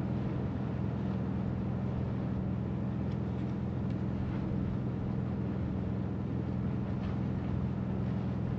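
A steady, even low hum, like an engine or machinery running, over faint background noise.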